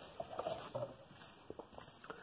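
Faint rustling and light taps of cardboard LP record sleeves being handled and picked up, with a few soft ticks in the first second.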